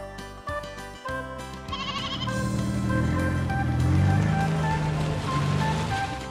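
Light, plinking children's background music. About two seconds in, a louder, noisy sound effect with a low wavering tone joins the music and lasts until near the end.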